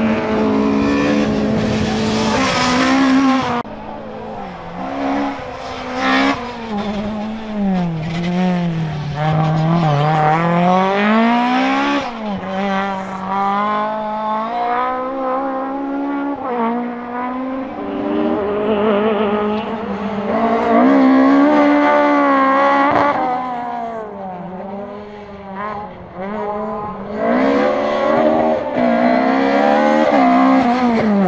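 Four-cylinder engine of a small Toyota hatchback rally car revving hard. Its pitch climbs and drops again and again as it changes gear and brakes for corners, fading somewhat as the car pulls away and coming back loud as it nears.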